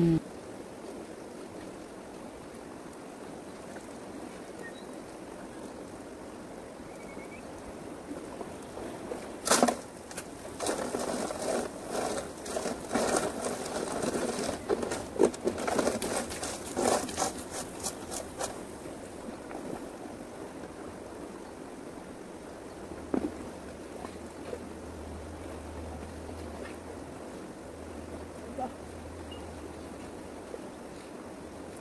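Steady rush of flowing water, with a stretch of irregular scraping, rattling and knocking from handling gear and gravel that starts about ten seconds in and stops about eight seconds later, then a single knock.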